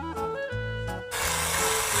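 Background music with a bass line. About a second in, a loud steady grinding noise joins it, like a small electric food chopper blending ice and starch into fish paste.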